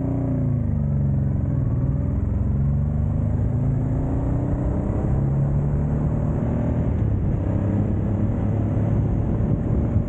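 Motorcycle engine heard from on the bike: the pitch dips briefly near the start, then climbs steadily for several seconds as the bike accelerates away, levelling off near the end. Low wind and road rumble run underneath.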